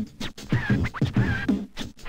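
Interlude music with turntable scratching: a run of quick scratch strokes, each sweeping sharply in pitch.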